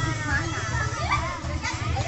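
Children's voices chattering and calling out over background music with a steady bass beat.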